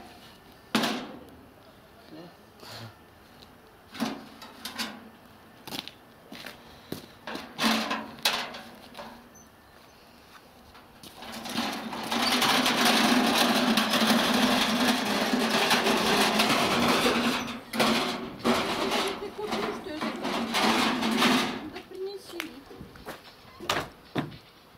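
Hand cart carrying a galvanized metal tub: scattered knocks and scrapes as the tub is handled, then about ten seconds of continuous rattling and rumbling as the cart is wheeled across the asphalt yard, followed by a few more knocks.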